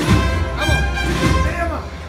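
Processional band playing a Spanish Holy Week march, with held brass notes over heavy drum strokes about every half second or so; it eases off near the end.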